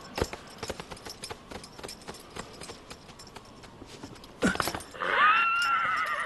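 Horse hooves clip-clopping on grass, then a short loud burst, then a horse whinnying loudly: one long, quavering neigh that starts about five seconds in.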